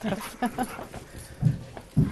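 Soft voices at first, then two dull low thumps, one about a second and a half in and a louder one at the end.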